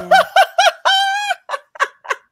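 A woman laughing heartily: a quick run of high-pitched laughs, one long held note about a second in, then a few short gasping breaths near the end.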